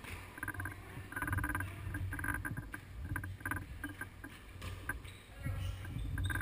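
Muffled sounds of an indoor futsal game: a string of short knocks and scuffs from the ball and players' shoes on the court, with faint voices.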